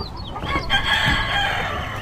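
A rooster crowing once, a long call held for about a second, over a steady noisy wash.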